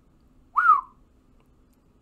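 A man gives a single short whistle about half a second in, gliding up in pitch and then dropping back down.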